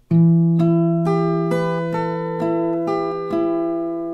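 Acoustic guitar fingerpicked: one round of an A minor arpeggio pattern, eight single notes about half a second apart over a ringing open A bass string.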